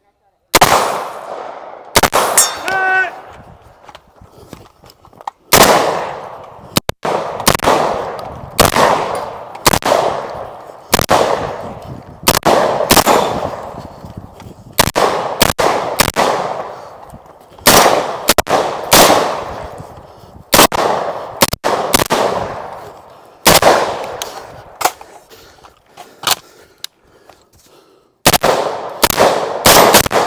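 Gunshots from a semi-automatic long gun, about one a second, each with a long echoing tail, and a steel target ringing after a hit about two and a half seconds in. The shots pause briefly near the start and come faster near the end.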